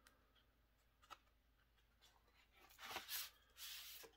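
Faint rustling and sliding of paper as an insert is drawn out of a vinyl album's sleeve, with a soft click about a second in and the rustling near the end.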